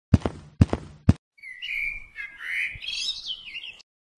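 Three sharp knocks about half a second apart, then bird-like chirping with warbling high notes that wander up and down in pitch.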